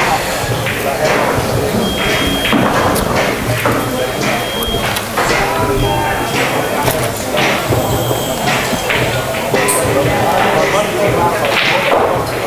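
Background voices in a billiard hall, with scattered knocks and clicks throughout.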